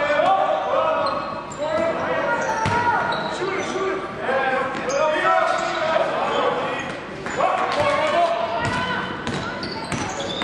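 A basketball bouncing on a gym court, with players' voices calling out over it. The sound echoes through a large hall.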